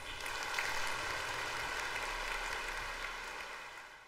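Audience applauding, starting suddenly and fading out near the end.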